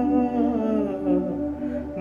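A vocal song in Telugu: a voice holding a long, wavering note over musical accompaniment.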